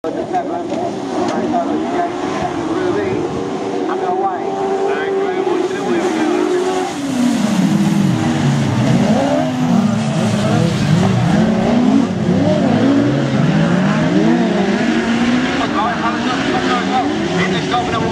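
Engines of several autograss racing cars revving hard on a dirt track, their pitch rising and falling over one another as the pack races, getting louder about seven seconds in.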